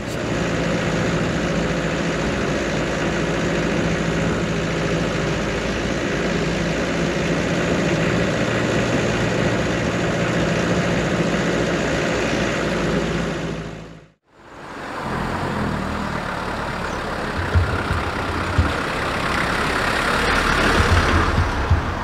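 The 2.25-litre indirect-injection diesel engine of a 1983 Land Rover Series III running steadily as the vehicle drives, with a tractor-like sound. About two-thirds of the way through it cuts out briefly, then comes back with more hiss over it.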